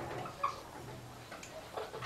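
Marker pen writing on a whiteboard: a few faint, irregular ticks and taps as the strokes are drawn.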